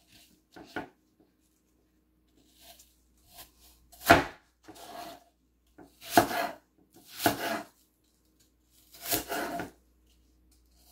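Serrated kitchen knife cutting an apple into chunks on a wooden cutting board: a series of separate cuts, each a short rasp ending on the board, the loudest about four seconds in.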